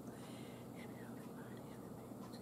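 A woman quietly whispering a prayer before a meal.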